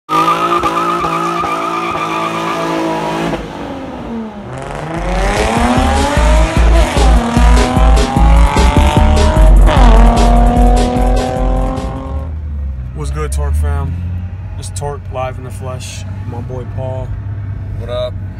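Infiniti G35 coupe doing a burnout, its engine held high and its rear tyres squealing for about three seconds. Then comes a louder edited stretch of engine revs rising and falling over a heavy beat, and after about twelve seconds voices over a low drone.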